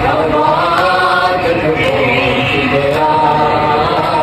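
A group of voices chanting a noha, a Shia mourning lament, in a melodic recitation that carries on steadily.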